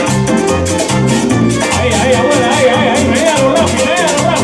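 Live salsa band playing: bass notes on a steady beat under quick, even hand-percussion strokes, with a wavering melody line coming in a little under halfway through.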